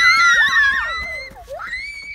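A group of children and adults cheering and shrieking in high, overlapping voices. The cheering fades, with one last rising shout near the end.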